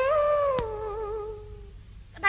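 A Khmer female singer holds one long note at the end of a phrase. The note slides down in pitch with a slight waver and fades out. A sharp click comes about half a second in, over a faint low hum from the old record.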